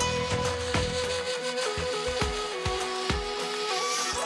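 Mongolian traditional ensemble playing live: a slow melody of long held notes stepping downward, from wooden flute and morin khuur horsehead fiddle, over regular drum beats.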